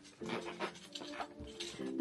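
Gold metal zipper on a Louis Vuitton Vanity Chain Pouch being dragged in short scraping strokes as the stiff, rigid-bodied case is forced shut, over soft background music.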